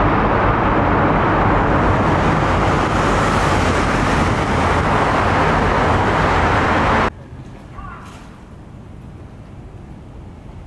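Road traffic inside a tunnel: a loud, steady wash of engine and tyre noise with a low rumble, which cuts off abruptly about seven seconds in. After it comes a much quieter street background.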